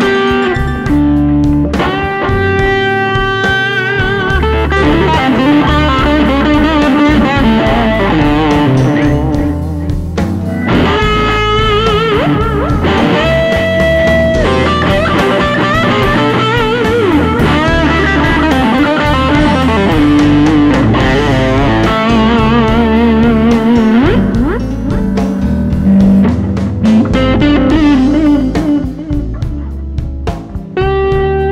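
Electric guitar played through an East Amplification Club 18 combo (two EL84 valves, two 10-inch speakers), playing long sustained lead notes with vibrato and bends over a full band of bass, drums and keyboard.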